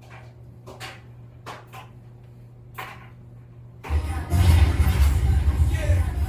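A steady low hum with a few faint short sounds. About four seconds in, loud bass-heavy music starts suddenly.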